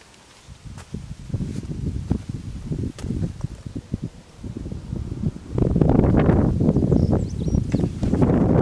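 Wind rumbling and buffeting on the camera microphone, with rustling handling noise. It grows much louder about five and a half seconds in.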